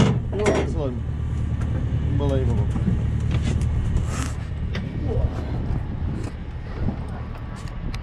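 Muffled voices over a steady low rumble, with clicks and rustles of a headset lead and the camera being handled.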